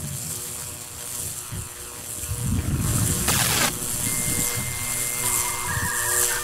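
Low, uneven underwater rumble, with a short rushing whoosh about three seconds in and a thin, steady electronic tone coming in about a second later.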